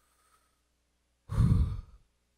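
A woman takes one deep, audible breath close on the microphone, heard as a sigh, about a second and a half in, after a near-quiet start. It is a deliberate calming breath, acted out against panic.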